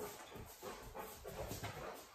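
A dog trotting across a tile floor: faint, irregular footfalls with panting.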